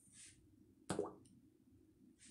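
A single short knock about a second in, with a brief lower tail, over faint low room noise.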